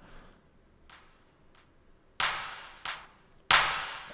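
Near silence, then a sampled hand clap from a Logic drum track sounds twice, about two and three and a half seconds in, each hit trailing off into reverb, with a weaker hit between them. This is the dry clap and its reverb send coming back in together as the track's fader is raised on a post-fader send.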